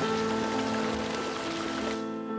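Fountain jets splashing steadily into a pond, heard together with background music of held tones.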